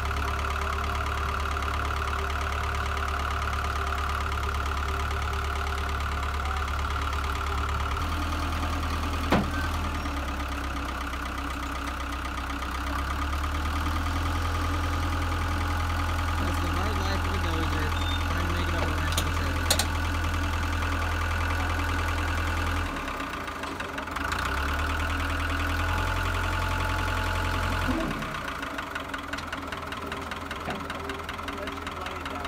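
Caterpillar D3 crawler dozer's diesel engine running while it is driven up ramps onto a trailer, its note shifting several times and dropping near the end. A few sharp knocks stand out, one about nine seconds in and two around twenty seconds.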